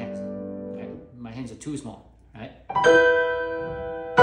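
Grand piano: a held chord fades through the first second, then a loud chord is struck about three seconds in and rings on, slowly decaying.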